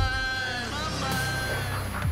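Trailer sound design under the title card: two pitched tones with many overtones, the first wavering and breaking off early, the second held for under a second, over a low steady bass drone.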